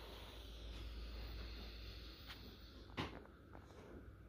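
Near-quiet room tone with a faint low hum, broken by a light click about three seconds in.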